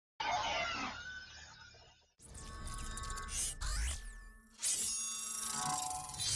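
Electronic channel-intro sting of music and sound effects: a sudden hit that fades away over about two seconds, then swelling synth sounds with a sweeping glide in pitch, and a second loud hit just before five seconds in that leads into steady electronic tones.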